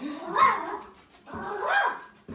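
A household pet calls out twice, each call under a second long, with a pitch that rises and falls.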